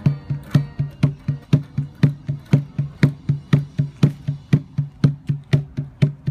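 A steady percussion beat, about four even hits a second, each a sharp knock with a short low thump.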